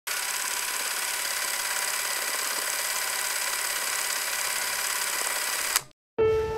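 Steady mechanical whirring with a high hiss, an intro sound effect, starting abruptly and cutting off suddenly just before the end.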